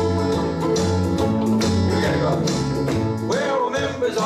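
A group of ukuleles strumming chords together in an upbeat, country-style song, with low bass notes changing under the chords.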